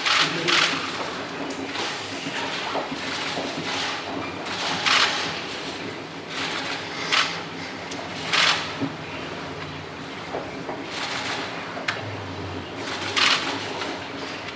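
Camera shutters firing in short rapid bursts, about ten of them spread irregularly, over a low room murmur.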